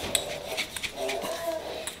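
A quart glass mason jar of dry cocoa-and-sugar powder being shaken by hand, its contents and metal lid making a run of quick soft clicks and rattles as the powder mixes.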